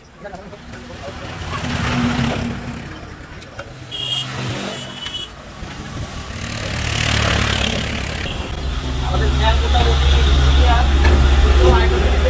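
Motor vehicles going past, each swelling and fading, with two short high beeps near the middle; from about two-thirds of the way in a loud, low engine rumble holds steady.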